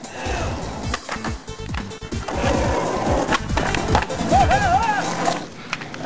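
Skateboard wheels rolling and clattering on pavement, a dense rumble with many irregular knocks that grows louder about two seconds in. Near the middle a brief warbling, wavering pitched sound rises and falls over it.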